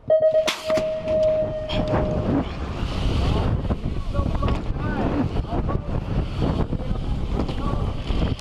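BMX start-gate tone held for about two seconds, with a sharp bang about half a second in as the Pro Gate drops. Then riders pedal hard down the start hill, with heavy wind noise on the bike-mounted camera and tyres rumbling on the track.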